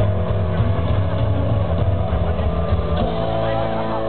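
Three-piece rock band playing live through the PA, heard from the crowd: distorted electric guitar, bass and drums in a dense, steady wall of sound.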